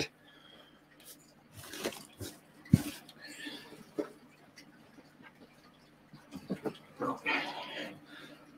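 Faint, scattered handling noises: light rustling and a few sharp clicks, the loudest click about three seconds in, with a brief rustle near the end.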